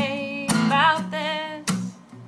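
A woman singing to her own strummed acoustic guitar. Chords are strummed about half a second in and again near the end, and a held sung note wavers with vibrato between them.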